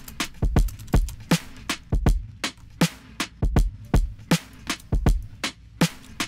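Layered electronic drum loop playing back: a sampled drum break with a deep kick about every second and a half, a snare hit halfway between each pair of kicks, and busy lighter ticks in between. The snare is layered with a white-noise snare-top sample.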